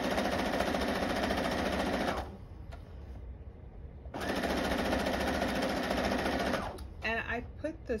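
Electric sewing machine stitching a quarter-inch seam through quilt fabric strips, in two runs of about two and a half seconds each with a short stop between them.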